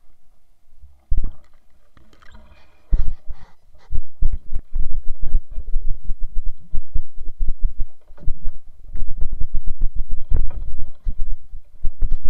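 Grass and brush rubbing and scraping close against a camera mounted on a hunting weapon, with heavy handling bumps and footfalls as it is carried through tall undergrowth. It starts about a second in and becomes an almost unbroken run of rustles and knocks from about three seconds in.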